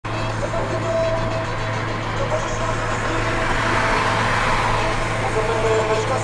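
Steady drone of a Zastava 750's small rear-mounted four-cylinder engine cruising at highway speed, heard inside the cabin with road and wind noise.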